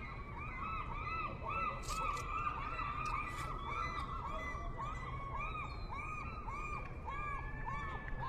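Gulls calling in a long series of rising-and-falling cries, two or three a second, over a steady low city hum.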